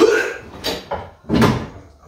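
Heavy wooden workbench being heaved up and set onto its caster wheels: a sharp knock right at the start, another about two-thirds of a second in, and a deep thud about a second and a half in, mixed with a man's strained grunts.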